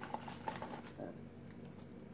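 Faint chewing and crunching of potato chips, with a few light clicks as chips are bitten and handled.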